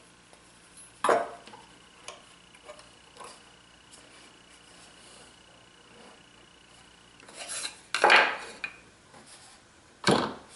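Hard clacks, clinks and scraping of a metal spacer and a Domino joiner being set against a wooden board, with no motor running: one sharp clack about a second in, a few light ticks, then a louder cluster of knocks and scraping near the end.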